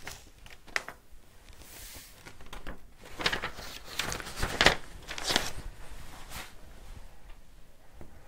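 Sheet of paper being handled and excess embossing powder tipped off it back into a small plastic jar, then the jar's lid being put on: a short soft hiss near the start, then a run of paper rustles and scrapes in the middle.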